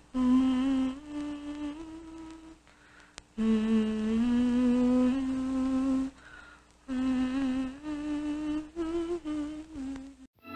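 A voice humming a slow, lullaby-like tune without words, each note held about half a second to a second, in three phrases with short pauses between them.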